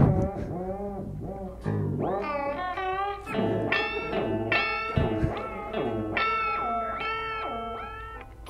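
Electric guitar played through an Old Blood Noise Endeavors Reflector V3 chorus pedal in its pitch-shifted chorus mode. Rate and depth are turned up, so the notes keep wobbling and bending in pitch and never quite settle.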